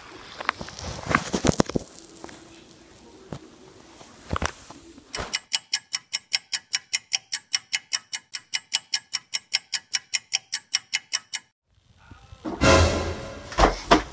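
A clock-ticking sound effect: sharp, even ticks at about four a second for about six seconds, which cut off abruptly. Before it come light rustles and clicks. After a short gap, a loud noise lasting about a second and a half comes near the end.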